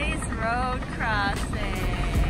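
Steady low rumble of street traffic and wind noise, with a voice over it in four drawn-out, gliding phrases.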